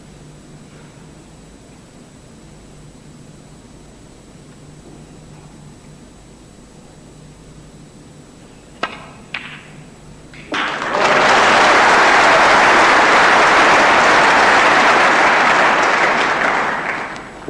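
Snooker balls clicking, two sharp knocks about half a second apart as the cue ball is struck and hits a red. About a second later a hall audience breaks into loud, steady applause for the pot.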